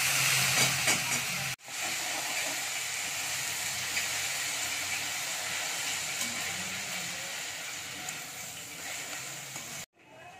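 Fresh fenugreek leaves frying in hot oil in a metal wok with potato cubes, a steady sizzling hiss as they are stirred with a metal spatula. Loudest in the first second and a half, as the wet leaves hit the oil, then cut briefly and continuing at an even level.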